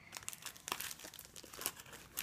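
Packaging crinkling as it is handled: a run of small, irregular crackles.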